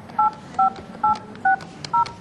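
Telephone keypad being dialled: a run of short touch-tone beeps, each two pitches sounding together, about two a second, as a phone number is keyed in.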